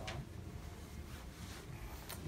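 Quiet room tone with a low hum, and a single sharp click right at the start.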